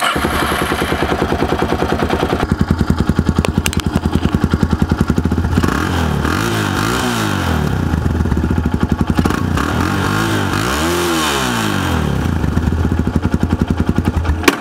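A 1998 Yamaha TT-R250 Raid's 249cc air-cooled four-stroke single-cylinder engine running at idle through its original, unmodified stock exhaust. It is blipped with the throttle, rising and falling in pitch about halfway through and again near the end.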